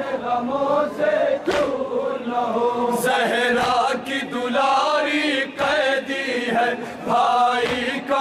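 Men chanting a Shia noha, a mourning lament, in unison: a sung melodic line in phrases with short breaks between them. Two sharp slaps land in the first three seconds.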